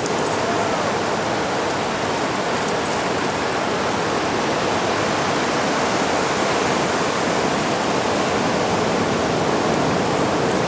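Ocean surf washing in the shallows: a steady, even hiss of moving water.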